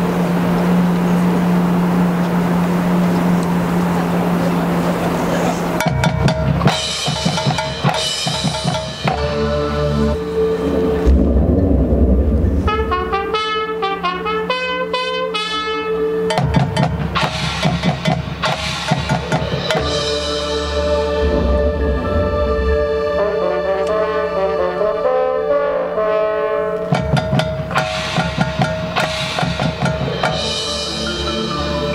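Marching band with percussion and front ensemble playing field-show music. A steady low held tone with hiss gives way, about six seconds in, to drum and percussion hits, held band chords and fast mallet-keyboard runs, with heavy low hits underneath.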